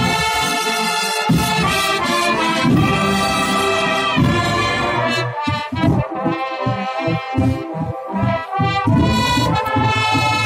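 A wind band with a full brass section playing together in sustained, loud chords; about halfway through, the low notes break into short repeated strokes, about three a second, under the held upper parts.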